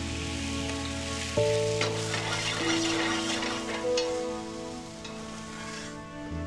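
Sumac-syrup and champagne glaze sizzling and bubbling in a cast-iron skillet, under soft background music of long held notes.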